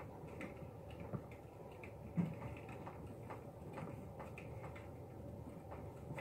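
Faint, irregular taps and scrapes of a pen writing on a classroom whiteboard, over a low steady room hum.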